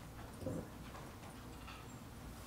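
Quiet room tone in a large hall, with faint shuffling and one soft knock about half a second in.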